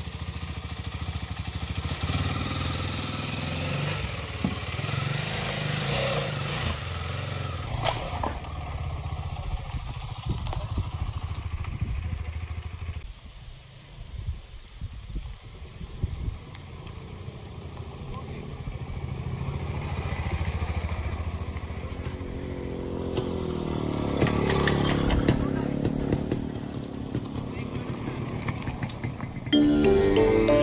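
Motorcycle engine idling steadily, then a motorcycle riding along the road, its sound growing to a peak late on and then falling away.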